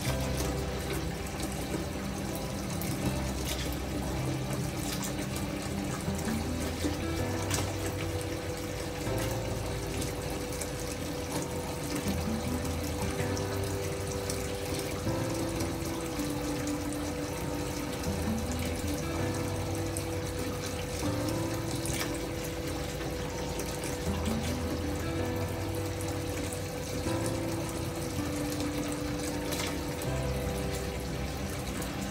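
Water running from a bathtub spout at full pressure into a filling tub: a steady rush and splash. Calm background music with slow, changing notes plays over it.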